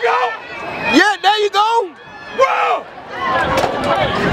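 Spectators yelling to urge on runners in a 400 m track race: a few drawn-out, high-pitched shouts, the loudest about a second in, over a noisy background.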